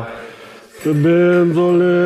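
A man's voice chanting in long, drawn-out held notes, a Tibetan recitation. The chant breaks off just after the start and picks up again about a second in with a long steady note.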